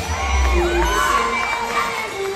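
Crowd cheering and screaming, many high voices yelling and whooping in rising and falling calls.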